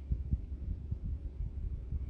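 Low steady rumble with several soft, dull thumps scattered through it.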